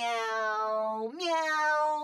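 A long, drawn-out sung 'meow' held on one steady note, then stepping up to a higher held note about a second in. The pitch is flat and even, like a voice or pitch-corrected meow in a meme song rather than a cat's natural gliding call.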